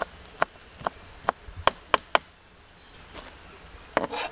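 Knife chopping on a cutting board: about seven quick, sharp strikes in the first two seconds, then a pause. A steady high insect drone runs underneath.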